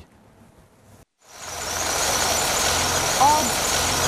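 Outdoor vehicle ambience fades in about a second in: a steady rumble of a truck engine running, with a faint voice.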